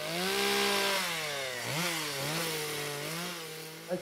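Gasoline chainsaw running steadily as it carves into a wooden sculpture. Its engine pitch dips and climbs back about halfway through, as the chain takes load in the wood.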